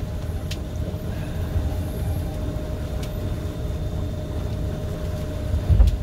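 Boat under way: a steady low rumble of wind and water rushing past the hull, with a faint steady hum underneath. There is a brief louder low bump near the end.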